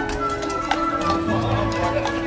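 Upbeat music playing from a passing character carriage, with horse hooves clip-clopping on pavement as the horse-drawn carriage goes by.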